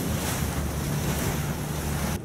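Wind buffeting the microphone over a choppy sea, with waves splashing: a steady rushing noise with a low rumble.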